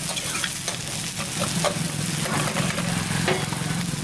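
Chopped cabbage, carrot and capsicum sizzling in hot oil in a steel wok, with a steel ladle scraping and tapping the pan at irregular moments as the vegetables are stir-fried.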